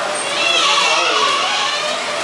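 People's voices talking, with no steady machine sound standing out beneath them.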